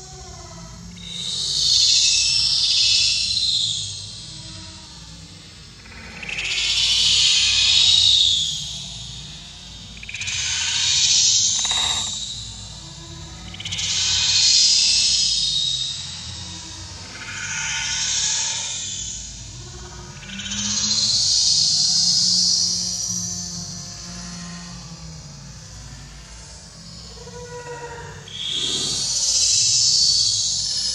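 A chorus of insects calling in repeated rising-and-falling swells of high, hissing buzz. Each swell lasts about two seconds and they come every three to four seconds, with a quieter gap near the end before one last swell.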